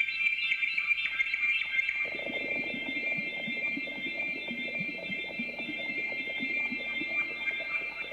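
Electronic music played on an analog synthesizer: steady, sustained high tones held together. About two seconds in, a fast, dense patter of short, lower blips joins them.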